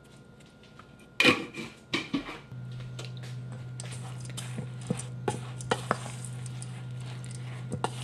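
Hands and a spoon stirring a dry gluten-and-oat mix in a stainless steel bowl, with scattered clicks and scrapes against the metal. A steady low hum starts about two and a half seconds in.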